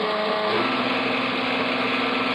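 Homebrew three-axis CNC mill engraving a copper-clad circuit board: the spindle and engraving bit run in a steady machine hum. The tone shifts lower about half a second in as the cut moves on.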